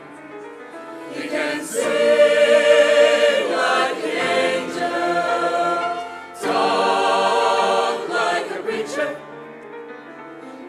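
Mixed youth choir singing sustained chords with vibrato in long phrases, swelling loud a second and a half in, dipping briefly past the middle and easing off near the end.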